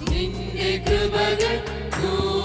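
Choir singing a Malayalam Christian hymn of praise with electronic keyboard accompaniment, holding long sustained notes.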